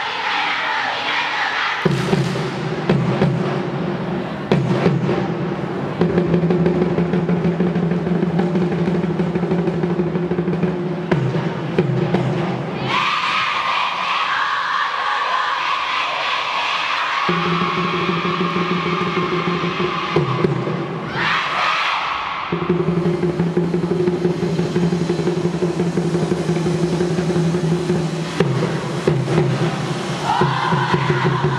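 A large group of students chanting and singing a cheer in unison, in long held notes, with a higher-pitched passage around the middle and another shorter one a few seconds later.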